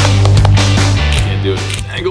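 Loud background music with a heavy bass line and a beat, dropping in level in the second half.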